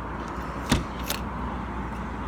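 Plastic key card slid in and out of a motel door's card-slot lock: a sharp click about three quarters of a second in and a lighter click just after, over a steady low hum.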